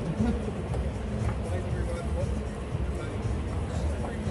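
Outdoor city ambience: a steady low rumble of wind and traffic, with faint voices murmuring.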